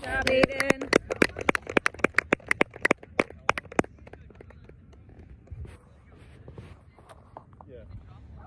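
One person clapping close to the microphone, a quick even run of about five claps a second that stops about four seconds in. A voice is heard at the very start.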